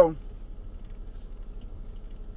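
Low, steady background hum with no distinct sounds, after the last syllable of a man's spoken word at the very start.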